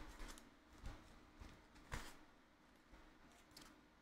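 Near silence with a few faint taps and rustles of paper trading cards being handled and set down on a playmat.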